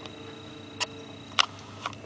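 Three short, sharp clicks about half a second apart, over a faint steady hum, as the calculators on the desk are handled.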